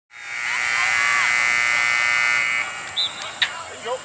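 A loud, steady buzzing tone that fades in and holds for about two and a half seconds, then cuts off. After it come quieter field sounds: brief calls and a sharp click.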